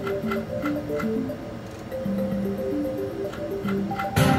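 Mystical Unicorn video slot machine playing its reel-spin tune, a simple melody of held notes, with light regular ticking as the reels spin and stop.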